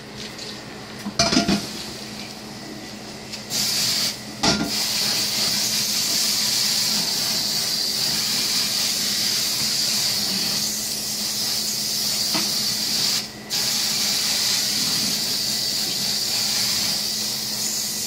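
Kitchen tap running water onto a hot metal pot in a stainless-steel sink, sending up steam. The steady water noise starts a few seconds in and breaks off briefly twice. It follows a couple of knocks as the pot is handled.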